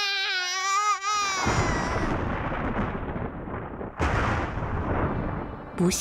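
Cartoon child's voice wailing, a loud wavering cry that lasts about a second, followed by several seconds of dense, crash-like noise with a fresh surge about four seconds in.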